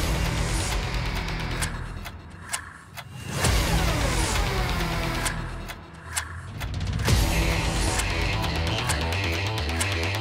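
Energetic music with a heavy, driving beat that drops back twice for a moment, with a falling sweep as it comes back in after the first break.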